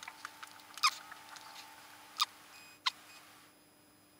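A few faint, short clicks, each sliding down in pitch, over a faint steady room hum; the sound drops out entirely about three and a half seconds in.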